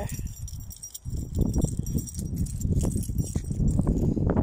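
Rumbling wind and handling noise on a phone's microphone during a walk, louder from about a second in, with a light metallic jingling throughout.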